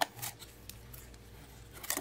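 Handling noise from an Amazon Echo smart speaker being gripped and lifted off its packaging insert: a few short clicks and scrapes, the sharpest right at the start and another near the end.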